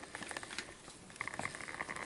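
Faint scattered light clicks and scrapes of a small plastic dropper bottle being handled and capped, with glassware close by.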